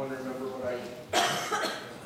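A person coughs about a second in, the loudest sound here, after a moment of talk.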